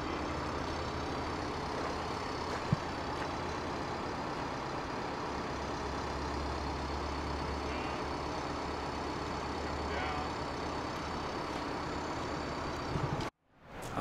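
Heavy diesel engine running steadily with a low hum, a little louder in the middle, with a single sharp click about three seconds in; the sound cuts off suddenly near the end.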